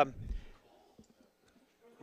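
A short low rumble that fades within half a second, then near silence with one faint click about a second in.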